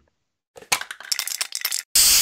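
Intro sound effects: a quick run of glassy clinks and rattles, then a sudden loud rush of noise just before the end.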